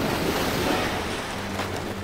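Loud rush and splash of water as a large shark surges up out of the sea beside a boat, a film sound effect that fades off gradually. A low steady hum comes in about two-thirds of the way through.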